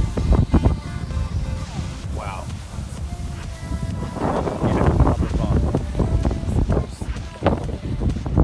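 Wind gusting against the microphone in a heavy low rumble, with music with held notes and some voices faintly underneath.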